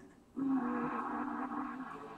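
Television audio: a short musical sting of held, steady tones that starts sharply about half a second in and drops lower near the end, between broadcast segments.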